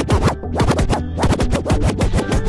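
DJ scratching a record over the track's beat: rapid back-and-forth strokes, several a second, over a steady bass line.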